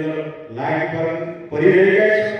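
A man's voice through a microphone, delivered in drawn-out, chant-like phrases with long held vowels: two sustained phrases with a short break about half a second in.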